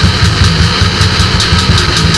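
Loud grindcore/powerviolence recording at full speed. Heavily distorted guitars and bass sit under fast, dense drumming.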